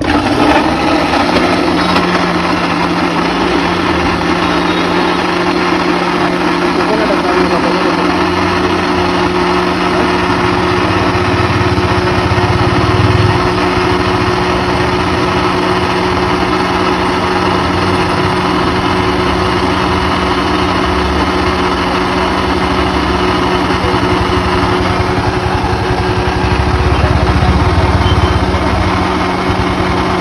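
Electric countertop mixer-grinder switched on, its motor starting abruptly and then running at a steady pitch as it blends a milkshake in its plastic jar.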